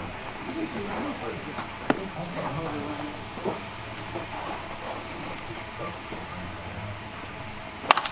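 Crack of a baseball bat hitting a pitched ball near the end: a single sharp, loud strike over low voices and field chatter. A smaller sharp pop comes about two seconds in.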